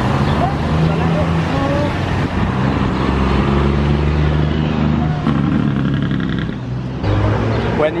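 A heavy truck's engine running on the road close by, a steady low hum with road traffic noise that eases off about six and a half seconds in; a few brief voice fragments.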